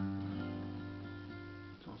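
Steel-string acoustic guitar: several notes picked together once and left to ring, fading over nearly two seconds, sounding the flattened (minor) seventh of a G7.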